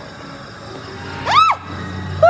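A steady low background hum, and about a second and a half in a child's single short high squeal that rises and falls in pitch.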